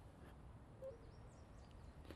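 Near silence: faint outdoor ambience with a low rumble and a few short, high bird chirps, and one brief faint sound just under a second in.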